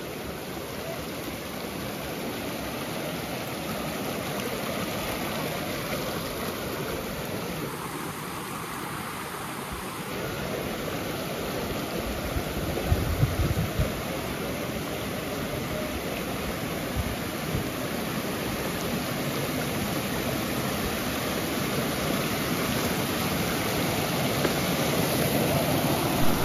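A shallow hill stream rushing and cascading over rocks, a steady rush of water that grows a little louder toward the end. A few brief low thumps come about halfway through.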